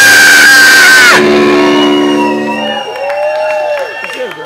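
Grindcore band's full-volume final blast with a high, steady tone held over it, cut off sharply about a second in: the end of the song. Steady amplifier tones hang on and fade while the crowd whoops and shouts.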